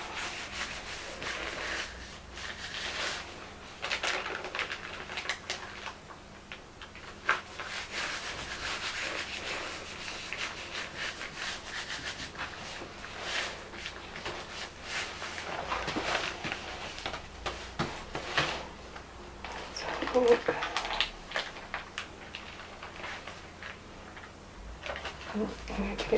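A flat hand rubbing and pressing thin paper down onto a gel printing plate over leaves: a dry, uneven rustling rub of palm on paper. Near the end, an edge of the paper is lifted off the plate with a brief paper rustle.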